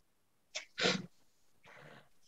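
A man sneezing once, the main burst about a second in, with a faint breath after it, heard over video-call audio.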